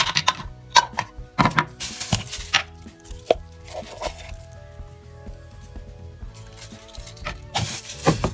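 Clear plastic bag crinkling and rustling as it is handled, in short bursts near the start and again near the end.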